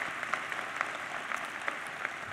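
Audience applauding: many hands clapping at a steady level.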